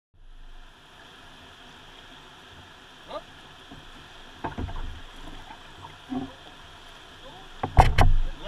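Kayak paddling: paddle blades splashing in the water with a few knocks, the loudest just before the end, over a steady hiss.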